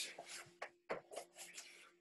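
Faint rustling and brushing of bodies shifting onto exercise mats, a handful of short scuffs over a faint steady low hum.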